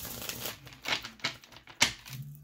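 A deck of tarot cards shuffled by hand: a quick fluttering patter of card edges, then a few sharp taps and snaps of the cards, the loudest near the end.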